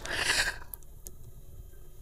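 A short, soft exhale into a handheld microphone, then faint room tone.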